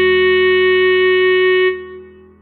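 Clarinet holding one long note over a low, steady backing; the note stops and fades near the end.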